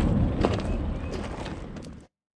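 Outdoor background noise with a low rumble and a sharp click about half a second in, fading out steadily as the audio ends.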